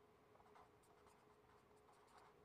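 Very faint scratching of a felt-tip marker writing on paper in short strokes, over a faint steady hum.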